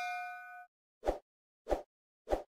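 A notification-bell 'ding' sound effect rings out and stops about two-thirds of a second in. It is followed by two short, soft pops about half a second apart.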